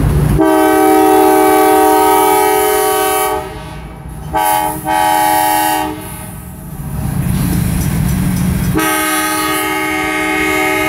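Nathan Airchime K5LA five-chime air horn on a CSX diesel locomotive sounding a series of blasts: a long one of about three seconds, a short one and a second of about a second around the middle, and another long blast beginning near the end. The low rumble of the locomotive's engine and wheels fills the gaps between blasts.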